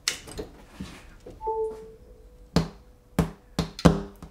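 A USB-C cable clicking into a MacBook Pro, followed a second later by a short electronic chime as the laptop starts charging. Then a few sharp knocks and clicks from handling on the wooden desk, the loudest near the end.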